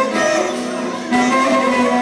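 Live band dance music, with a violin playing the melody over a guitar accompaniment. The music dips slightly in loudness for a moment and comes back up just after a second in.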